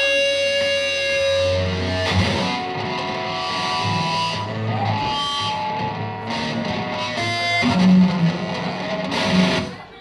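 A band playing live, with electric guitar to the fore, heard from the crowd in a club. The music stops abruptly just before the end.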